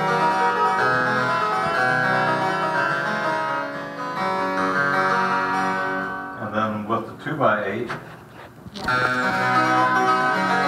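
An 18th-century English two-manual harpsichord played in a busy run of plucked notes. About six seconds in the playing breaks off for a couple of seconds, with a brief voice and some handling sounds, then resumes near the end.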